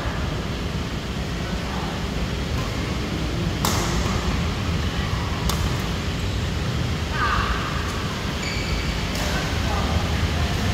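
Badminton racket strings striking a shuttlecock during a doubles rally: two sharp cracks about two seconds apart in the middle, and a fainter one near the end, over a steady low rumble in a large indoor hall with voices in the background.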